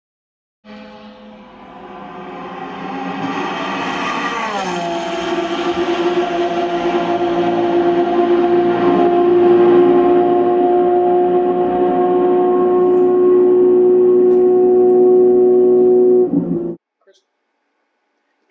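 An engine sound that swells up from quiet. It drops in pitch about four and a half seconds in, then holds one steady pitch as it grows louder, and cuts off suddenly near the end.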